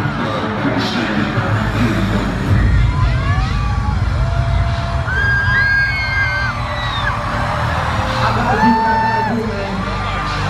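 Live arena concert music with a heavy bass line that gets stronger about two and a half seconds in, mixed with crowd cheering and high, held screams and whoops.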